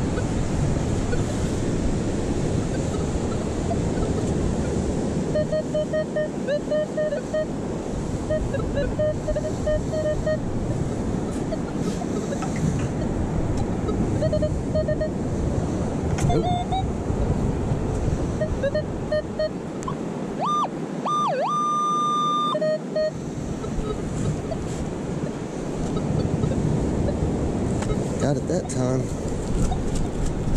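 Metal detector target tones: runs of short, evenly pitched beeps, then a higher tone that dips and rises before holding briefly, about two-thirds of the way through. A steady wash of wind and surf runs underneath.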